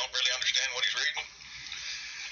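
A person speaking over a telephone line, narrow-band and thin, then about a second of steady line hiss with no words.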